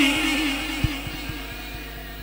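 A man's sung naat phrase through a loudspeaker system ends on a held note that fades away over the first half second, leaving a faint steady hum with a few soft clicks.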